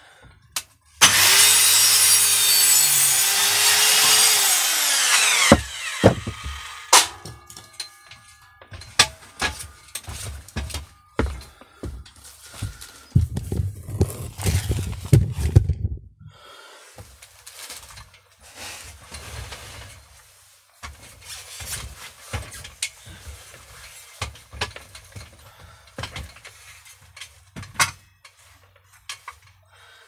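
Corded circular saw run up and cutting into timber for about four seconds, its motor tone dropping as it winds down. Scattered knocks, clicks and rattles of the saw and wood being handled follow.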